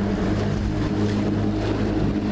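Small boat's motor running at a steady pitch as the boat moves across the lagoon, a constant low hum under the rush of water.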